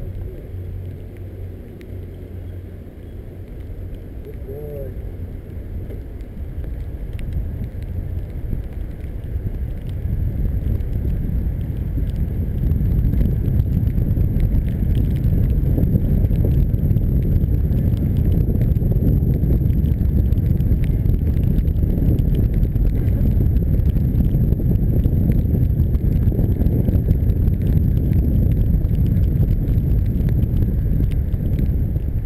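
Wind noise buffeting the microphone of a bicycle-mounted camera, with tyres hissing on a wet road. It grows louder over about the first twelve seconds, then holds steady.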